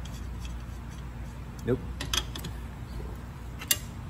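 Light metallic clicks and clinks of a threaded axle bolt, its nuts and washers being worked loose from a bike fork's dropouts: a few sharp ticks about two seconds in and one sharper click near the end, over a steady low hum.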